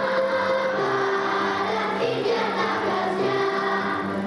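Children's choir singing a melody in long held notes.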